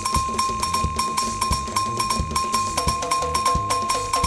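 Live percussion-driven praise music: a metal cowbell struck in a fast, steady pattern over hand-played conga drums. A second pitched part joins about three seconds in.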